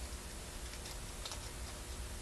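A few faint, light clicks and crinkles from a small tissue-paper square being handled against a pencil, over a steady background hiss and low hum.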